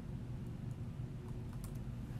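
Faint, scattered clicks of typing on a computer keyboard over a steady low hum.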